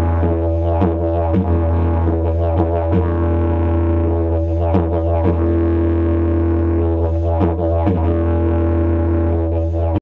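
Didgeridoo music: a steady low drone whose tone shifts in a regular rhythm, with a longer held stretch in the middle.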